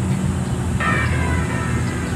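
Steady low rumble of a motor vehicle engine running nearby, with a hiss that joins about a second in.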